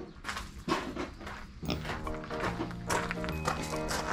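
Background music with held notes coming in about a second and a half in, over a micro pig rooting in gravel: many short scuffing and crunching noises from its snout and trotters on the stones.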